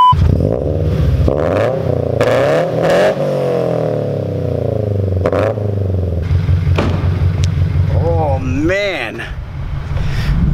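Subaru BRZ's flat-four engine revving through Tomei headers and an Invidia N1 exhaust in a parking garage, its pitch rising and falling in repeated blips, with a bigger rev up and back down about eight seconds in. A brief beep at the very start.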